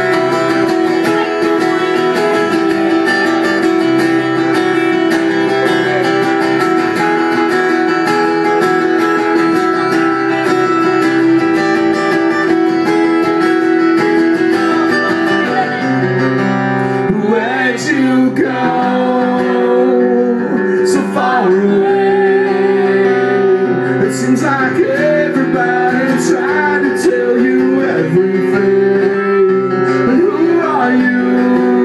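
Two acoustic guitars strumming chords in a live acoustic rock performance. A male voice starts singing about halfway through.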